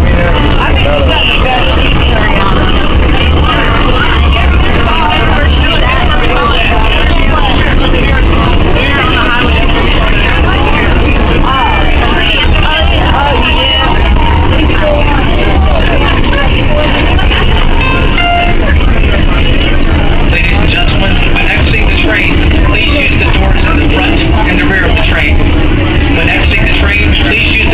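Ride noise inside a moving light rail car (a Tide train, a Siemens S70): a steady low rumble of the car running along the track, with indistinct voices of people talking throughout.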